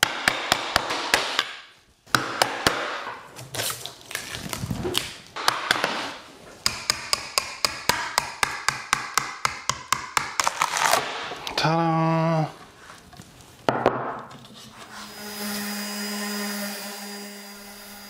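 Hammer knocking apart a wooden epoxy-pour form to free a cured epoxy tabletop, in quick runs of sharp taps and knocks. Near the end a random orbital sander runs steadily, sanding the cured epoxy slab.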